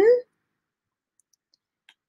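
The tail of a woman's drawn-out, sing-song word, its pitch rising and falling, cut off in the first quarter second. Then near silence with a couple of faint clicks, one about a second before the end.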